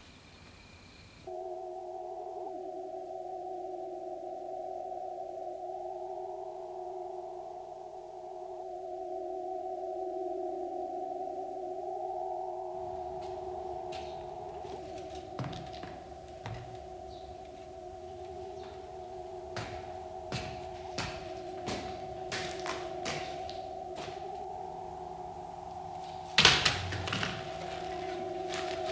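Eerie electronic drone of two sustained, wavering tones with occasional slow pitch slides. From about halfway it is joined by scattered sharp clicks and knocks, with a loud crash a second or two before the end.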